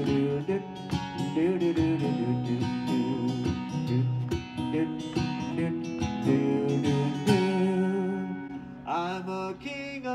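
Acoustic guitar strummed in a steady rhythm, an instrumental passage of chords with no singing over most of it.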